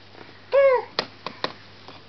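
A baby's short, falling vocal sound about half a second in, followed by a few sharp clicks.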